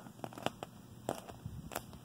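A few faint, scattered crackles and clicks as fingers handle a Bible's genuine water buffalo leather cover.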